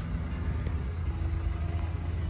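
Jeep Wrangler's engine running steadily at low revs as the lifted four-door Jeep crawls over the crest of a steep dirt mound: an even low hum with no revving.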